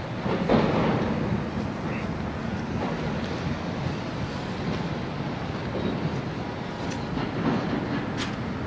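Steady rumble of city noise, traffic and wind, swelling briefly about half a second in.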